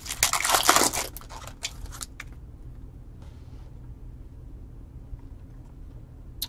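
The foil wrapper of a 2020 Bowman Chrome hobby pack is torn open by hand, crinkling loudly for about the first second. A few lighter crinkles follow up to about two seconds in.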